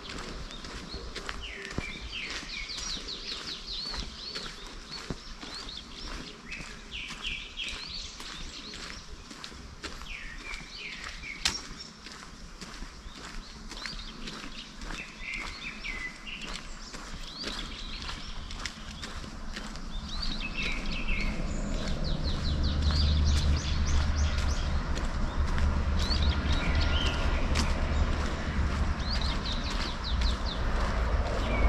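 Songbirds singing in repeated trills over footsteps at a steady walking pace on a paved path. About two-thirds of the way in, a low rumble builds and then holds.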